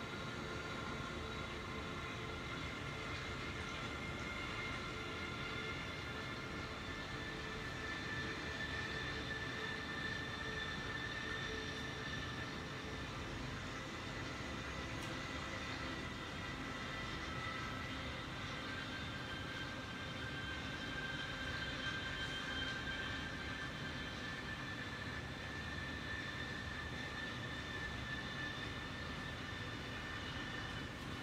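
A steady mechanical drone with faint high whining tones that drift slowly in pitch.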